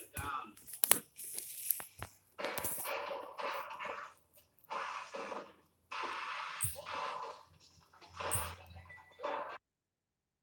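Handling noise from a phone being moved and rubbed against hair and skin: a few sharp clicks at the start, then bursts of scraping, crinkling noise, cutting off suddenly near the end.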